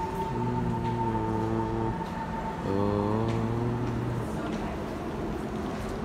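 A departing C151 metro train, its traction motor and inverter whine sounding as a chord of steady pitched tones over a rolling rumble. The tones hold, drop out about two seconds in, then come back rising in pitch a little before three seconds and stop around four seconds in. A steady high tone sounds through the first second or so.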